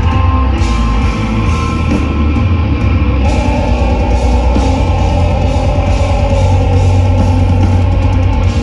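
Death metal band playing live through an outdoor PA, heard from within the crowd: loud, dense distorted guitars, bass and drums. The high end grows fuller about three seconds in.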